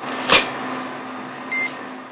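A sharp click, then a single short electronic beep about a second and a half in from an ID scanner reading a card, over a steady low hum.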